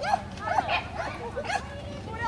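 A dog barking, about five short sharp barks roughly half a second apart.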